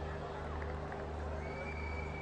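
Quiet background ambience of a cricket ground: a steady low hum with faint distant voices, and a thin faint high whistle-like tone in the last half second.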